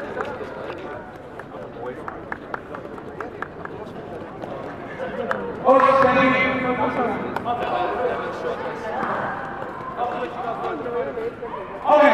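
People's voices in a large hall, with scattered short sharp clicks through the first half; about six seconds in, a loud raised voice comes in over them and talking carries on.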